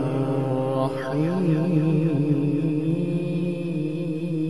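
Male qari reciting the Quran in melodic tajweed style, drawing out one long sung note. Its pitch wavers in an ornamental turn about a second in, then the note settles and is held.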